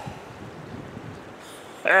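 Steady wind over the microphone, an even low rush with no distinct events; a man's short exclamation cuts in near the end.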